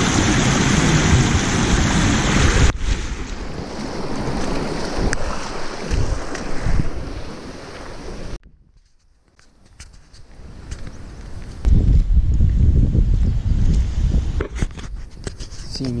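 Shallow river water rushing over a concrete ford, loud and steady, which cuts off abruptly after a few seconds. Then quieter outdoor noise follows, and in the last few seconds wind rumbles on the microphone.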